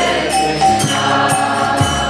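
Kirtan music: a harmonium holding sustained chords under voices chanting a mantra, with bright metallic percussion strokes about four times a second.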